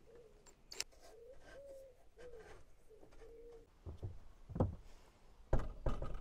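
Faint, wavering pigeon cooing repeats through the first half. Near the end come a few knocks as the steel door is pushed shut and still strikes its frame.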